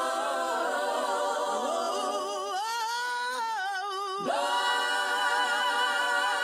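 Female backing singers in several-part harmony, isolated from the band by stem separation, holding long sustained notes. A wavering line with vibrato stands out in the middle, then a pitch swoops sharply down and a fuller, slightly louder chord comes in.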